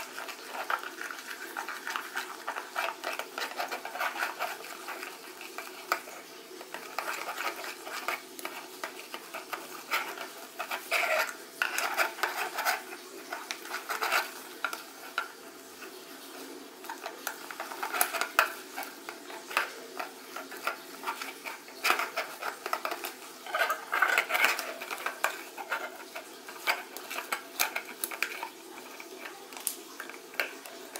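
Plastic spatula stirring and scraping foamy slime (glue, foaming soap and activator) around an enamel bowl, with irregular scrapes and clicks of the spatula against the bowl as the mix thickens into slime.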